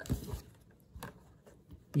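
Tarot cards being slid across a tabletop and picked up: a short papery rustle at the start, then a faint tap about a second in.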